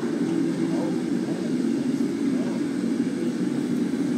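Steady drone of commercial kitchen machinery, even and unbroken, with voices faintly underneath.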